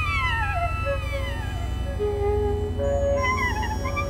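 Alto saxophone playing long falling pitch glides, then a held lower note, then short wavering bent figures near the end, over a steady low drone.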